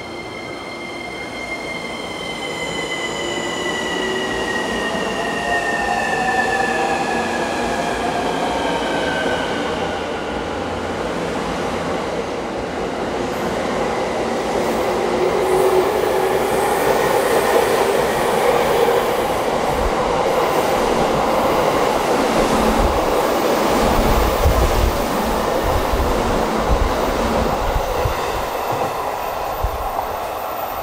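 JR East E231 and E233 series electric trains coupled together, pulling out and gathering speed. The electric traction motors and their inverter whine at first, several tones shifting in pitch over the first ten seconds. Then the rumble of the wheels on the rails grows louder, with repeated low knocks from about twenty seconds in as the cars roll over the track.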